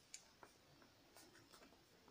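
Faint ballpoint pen on notebook paper: a few light taps and short scratches as a small drawing is finished, with the hand brushing the page.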